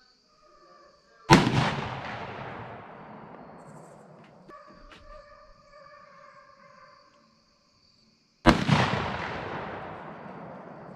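.30-30 rifle fired twice, about seven seconds apart, each shot followed by a long rolling echo that fades over several seconds. A few faint clicks come between the shots.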